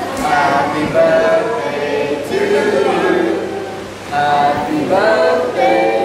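A group of people, men's and women's voices together, singing in unison, with sustained sung notes and a short break about four seconds in.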